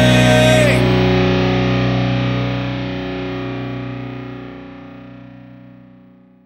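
The end of a hard rock song: a final distorted electric guitar chord is held. The cymbals and other high sounds stop under a second in, and the chord then rings out and fades steadily away.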